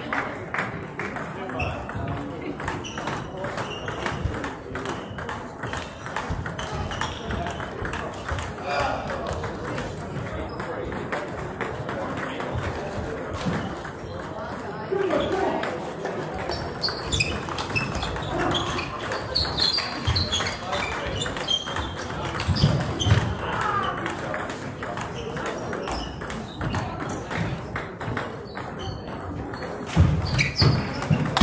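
Table tennis balls clicking off bats and tables in rapid, irregular strikes from rallies on several tables, with indistinct voices chattering underneath.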